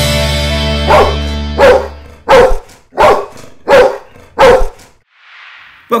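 A dog barking six times at an even pace, about one bark every 0.7 s, over the last held chord of intro music that fades out about two seconds in. A soft whoosh follows near the end.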